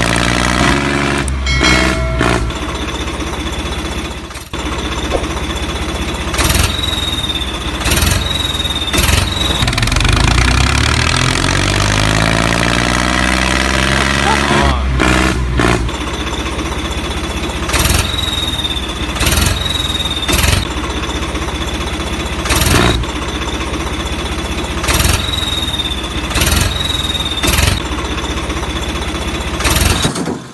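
An engine running and revving up and down, mixed with a voice and repeated short, sharp sounds.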